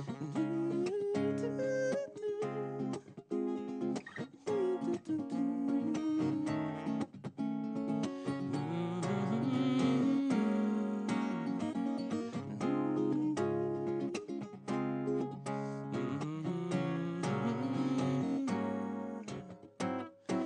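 Acoustic guitar strummed steadily in an instrumental passage of a live song, with a sliding melody line carried over the chords.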